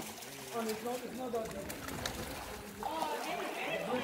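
Shallow stream water sloshing and splashing around people wading through it, with faint voices in the background.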